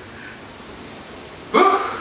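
A man sneezes once, a sudden short voiced burst about one and a half seconds in, after a quiet stretch.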